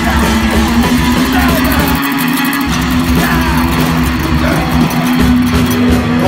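Grindcore band's lo-fi garage demo: electric guitar holding sustained low notes over a dense wash of cymbals, with the bass dropping out briefly about two seconds in.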